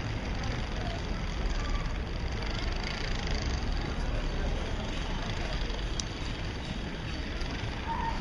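Steady outdoor street ambience: an even low rumble and hiss with faint voices in it.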